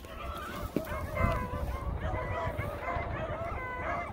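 A pack of hunting hounds baying on a rabbit's trail, many short overlapping calls a few each second.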